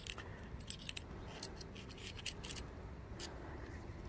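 Faint, scattered light metal clicks and ticks as the inner parts of a Yamaha SVHO supercharger clutch are pushed and pried back into its drive gear by hand and with a screwdriver.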